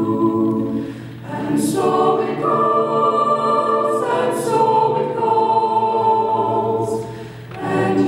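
Mixed-voice a cappella group singing slow, sustained chords without instruments. The sound dips briefly about a second in and again near the end, between phrases.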